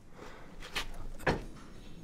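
Faint handling noises: low rustling with a few light knocks, the clearest just past the middle.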